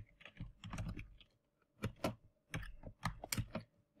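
Typing on a computer keyboard: a run of key clicks, with a pause of about half a second a little over a second in.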